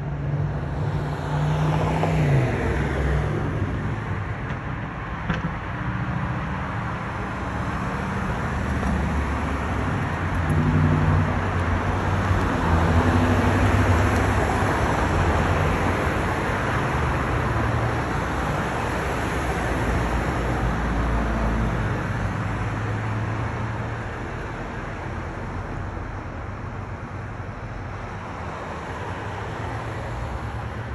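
Road traffic: cars going by on a city street, a steady wash that builds to its loudest about halfway through and eases off toward the end.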